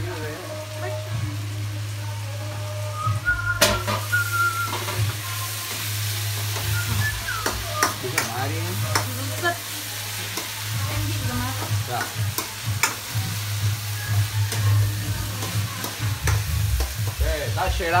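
Chopped vegetables sizzling in a hot wok while a metal utensil stirs them, with frequent short scrapes and taps against the pan. The sizzle gets stronger a few seconds in, over a steady low hum.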